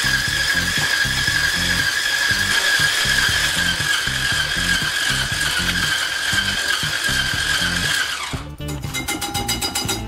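A cordless Cuisinart hand blender with a whisk attachment runs with a steady high whine, beating egg whites and sugar into meringue, and cuts off about eight seconds in. Background music with a steady beat plays underneath.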